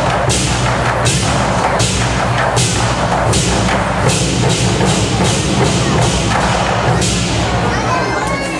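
An ensemble of large red Chinese drums beaten hard and fast together. A pair of hand cymbals crashes on a steady beat, a little more than once a second.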